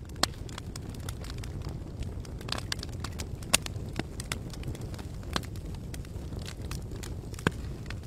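Crackling fire sound effect: a steady low rumble of flames with scattered sharp crackles and pops at irregular intervals.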